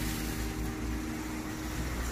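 Road traffic at a city intersection: a vehicle's engine hum, steady in pitch, that fades out near the end, over a low traffic rumble.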